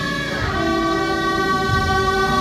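Brass band playing long held notes together, moving to a new note about half a second in.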